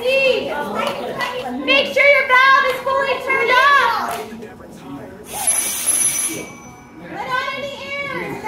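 High-pitched children's voices chattering. About five seconds in comes a hiss of compressed air, a little over a second long, with a thin whistle in it, from a firefighter's SCBA air pack being bled during its daily check.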